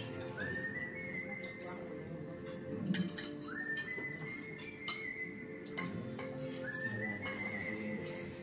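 Background music with a high, whistle-like melody that slides up into a held note, the phrase coming back about every three seconds. Short clinks of cutlery and glassware sound now and then.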